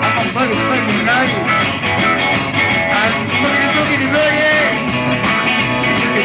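Live electric blues-rock boogie band playing an instrumental stretch: electric guitars, electric bass and drum kit with steady cymbal strokes, and a lead line of bending notes.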